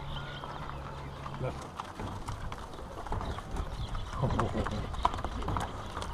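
Herd of water buffalo and cattle walking past over gravel and grass, hooves clopping in an irregular scatter, with faint voices around four to five seconds in.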